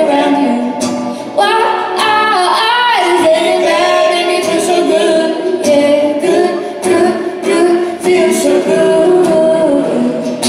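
Live acoustic song: a woman singing lead over strummed acoustic and electric guitars.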